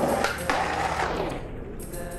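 Skateboard on concrete: a few sharp clacks of the board in the first second, with background music underneath.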